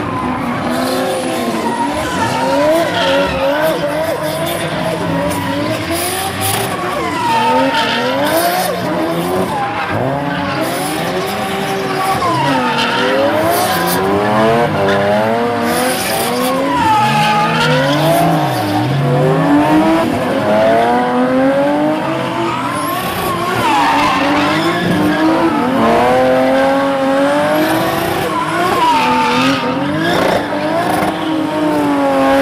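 Several drift cars' engines revving up and down over and over, several at once, as they spin their rear tyres in donuts, with tyre squeal and skidding mixed in.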